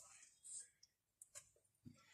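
Near silence, with a soft brief rustle and a few faint clicks from a cloth tape measure being handled over fabric.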